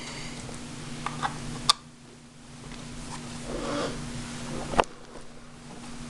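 A few sharp clicks and knocks, two of them loud, about a second and a half and near five seconds in, with softer rustling between, as an HP dv6 laptop is handled and its lid opened. A faint steady hum runs underneath.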